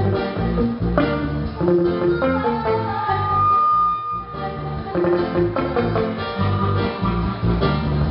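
Live reggae band playing with electric guitar, bass, keyboard and drums, heard through the stage PA. A single note is held for about a second a few seconds in.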